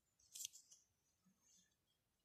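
Near silence: room tone, with one brief faint hiss about half a second in.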